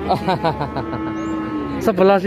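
Several men's voices talking over one another, with a steady, held pitched tone lasting under a second in the middle.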